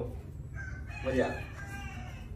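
A rooster crowing: one long call held from about half a second in to near the end. About a second in, a shorter, louder, lower-pitched voice-like sound lies over it, and a steady low hum runs underneath.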